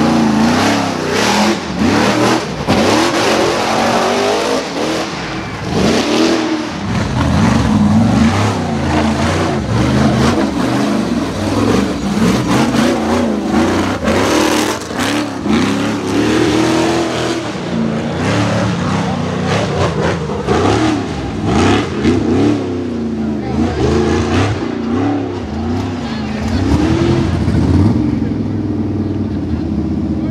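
A rock bouncer's 500-cubic-inch big-block Ford V8 revving hard again and again under full throttle while climbing, its pitch rising and falling with each burst of throttle.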